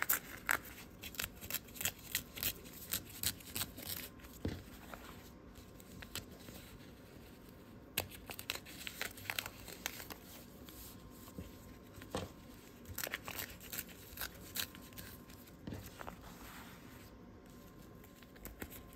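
Printer paper being torn away from the stitched seam lines on the back of a foundation-pieced quilt block: a string of short, irregular rips and crinkles with brief pauses between. The paper gives along the needle-perforated stitching like perforated paper.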